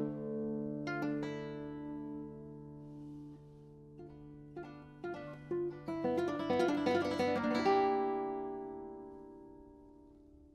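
Solo classical guitar: a chord rings at the start, a few separate plucked notes follow, then a fast cluster of notes builds into a chord about eight seconds in that slowly dies away.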